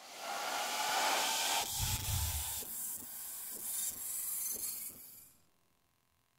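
A hissing noise effect in a song's backing track, like a white-noise sweep, that starts abruptly, with a low thud about two seconds in and faint ticks about once a second, then fades out near the end.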